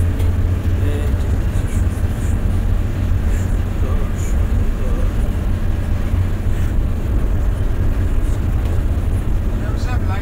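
A steady, loud low rumble with faint voices in it.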